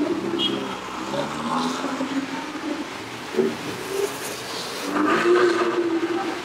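Ferrari supercar engines running at low speed as the cars roll slowly past, louder again about five seconds in as the next car comes through.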